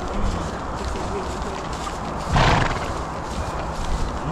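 Horses walking along a dry dirt-and-grass track, heard as a steady rush of noise. About halfway through, one short, breathy snort from a horse is the loudest sound.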